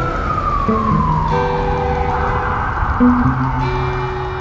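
A siren wail, falling slowly in pitch for about two and a half seconds and then starting to rise again, over music with held low notes.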